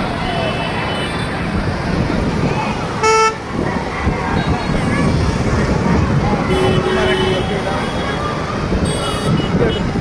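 Busy street noise of traffic and voices, with a short, loud vehicle horn toot about three seconds in. A fainter horn-like tone sounds for about a second in the middle.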